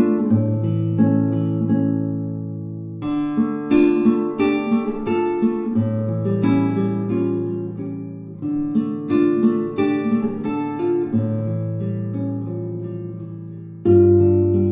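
Instrumental music on plucked acoustic guitar, a relaxed picked melody over sustained low bass notes, moving in short phrases.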